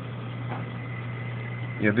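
Steady low hum with a faint high whine, from the aquarium's pump equipment running; a man says "yeah" at the very end.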